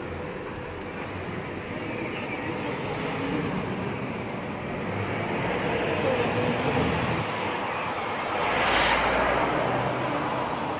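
Street traffic: a motor vehicle approaching and passing close by, its noise building steadily and loudest near the end.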